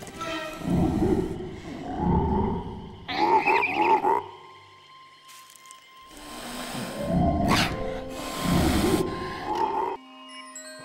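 Sound-effect calls of animated Majungasaurus dinosaurs: a series of short, low calls about a second apart, with a higher-pitched pair of calls about three seconds in and a quieter pause around the middle. A film score plays underneath.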